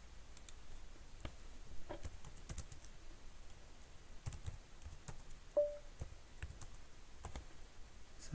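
Typing on a computer keyboard: scattered, irregular key clicks with short pauses between them. A brief steady beep sounds about five and a half seconds in.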